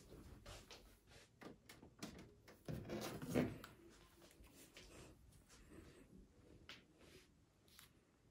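Faint, scattered clicks and rustles in a quiet room, with a slightly louder rustle or knock about three seconds in.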